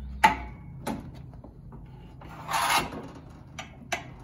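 A stack of paper being handled and set into the clamp of a perfect binder: a sharp knock about a quarter second in, a fainter knock soon after, a short rustling scrape of paper around the middle, and a click near the end, over a low steady hum.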